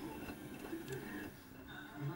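Electrolux EW1006F front-loading washing machine running faintly through a rinse, with a steady low motor hum from the turning drum of sudsy water.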